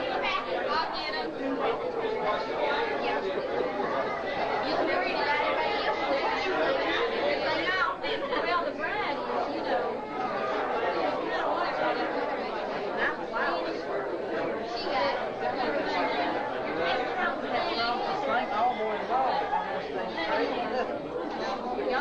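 Crowd chatter: many voices talking at once in a steady, unbroken din of overlapping conversation, with no single voice standing out.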